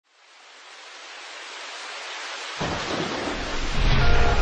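Steady rain hiss fading in from silence and growing louder, joined about two and a half seconds in by a sudden deep rumble of thunder.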